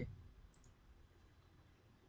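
Near silence with one faint computer mouse click about half a second in.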